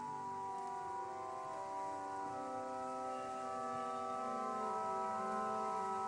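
Soft church organ music in slow, long-held chords.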